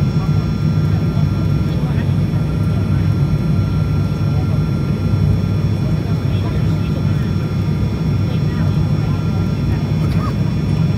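Inside the cabin of an ATR 72 turboprop airliner, the engines and propellers drone steadily on the descent: a deep, even hum with a thin steady whine above it.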